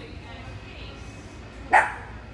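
A dog barks once, a single short sharp bark about three-quarters of the way in.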